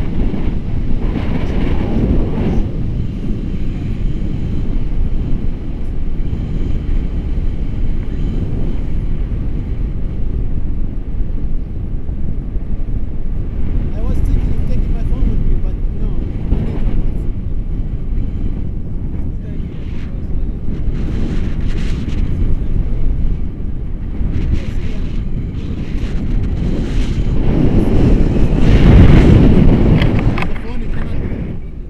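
Wind buffeting the action camera's microphone in tandem paraglider flight: a loud, steady low rumble that swells near the end.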